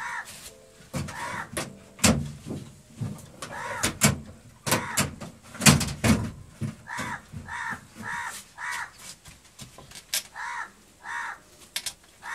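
Crows cawing again and again in runs of several short calls, over knocks and clatter from objects being handled. The loudest knocks come about two and six seconds in.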